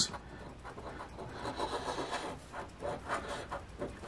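A coin scratching the coating off a scratch-off lottery ticket: a run of short scraping strokes.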